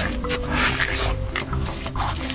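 A big bite tearing into a giant roasted drumstick: noisy, rough tearing of meat in the first second and a half, over background music with a steady melody.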